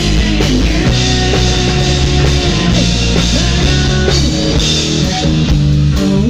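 A rock band playing live: electric guitar, bass guitar and drum kit, loud and continuous.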